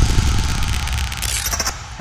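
Fading tail of an electronic logo sting: a noisy rumble and hiss dying away, with a brief glitchy stutter about a second and a half in.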